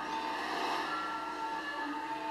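Balinese gamelan music accompanying the dance: steady ringing metallic tones, with a noisy rushing swell over about the first second.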